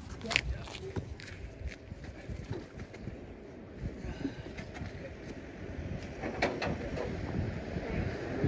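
Faint, indistinct voices over a low rumble of wind on the microphone, with scattered light knocks and clicks.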